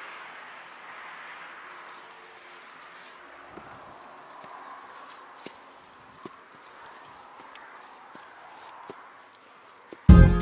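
Footsteps on an outdoor path, soft knocks roughly once a second starting a few seconds in, over a faint steady rush of road traffic from below that fades.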